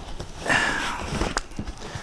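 Unpacking noise: a cardboard box rustling and scraping as it is drawn out of a fabric equipment bag, followed by one sharp click.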